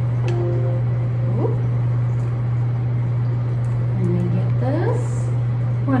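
A steady low hum, with a few faint, short pitched sounds over it; the song has not started.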